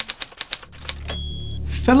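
Typewriter keys striking in a quick irregular run, followed just after a second in by a short high bell ding, like a typewriter's end-of-line bell.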